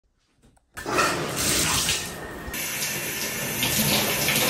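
Shower running: an even spray of water hitting the tub and skin, starting about a second in.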